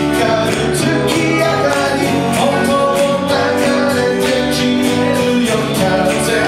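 Live band playing a song: strummed acoustic guitars and electric guitar over a steady beat, with a sung vocal line.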